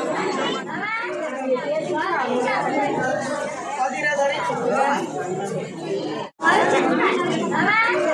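Overlapping chatter of several people talking at once, in a hall-like space. It cuts out completely for a split second about six seconds in.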